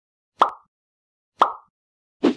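Two identical short plop sound effects, about a second apart.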